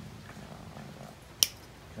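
A single sharp snip about one and a half seconds in: wire cutters cutting through thin floral wire. A faint low hum runs underneath before it.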